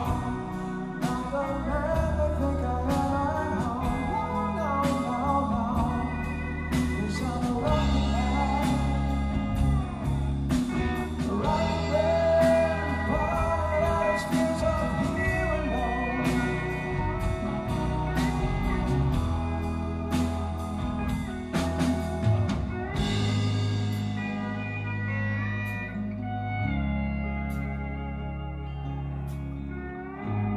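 Live rock band playing an instrumental passage: a lap steel guitar played with a slide carries a gliding melody over electric rhythm guitar, bass and drums. About three-quarters of the way through, the drums drop out, leaving the steel guitar and held bass notes.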